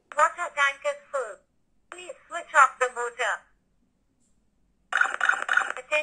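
Arduino water-tank overflow alarm playing its recorded English voice message through a small speaker: "Water tank is full. Please switch off the motor," then after a short pause "Attention please" begins again. The looping message signals that the water has reached the level probes and the tank is full.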